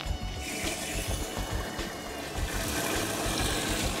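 Hot water running from a spigot into a plastic jug as it fills, with faint music underneath.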